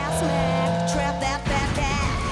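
Cartoon car sound effects over theme music: an engine revving as the accelerator is floored, then a sudden crash of splintering wood about one and a half seconds in as the car bursts through wooden doors.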